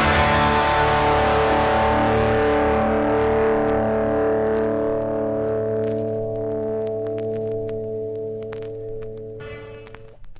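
Final chord of a punk rock song: electric guitars and bass left ringing after the band stops, slowly fading away. A brief scratchy noise comes near the end, then the sound cuts off.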